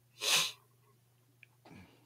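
A single short, sharp burst of breath from a person near the start.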